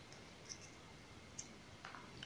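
Near silence with a few faint, short clicks of plastic craft wire strands being handled and pulled through a knot by hand.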